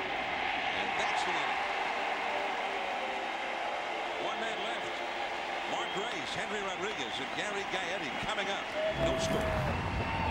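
Ballpark crowd murmur: a steady blend of many voices in the stands between pitches. About nine seconds in, a low rushing sound and a held tone cut in as the broadcast switches to a graphic transition.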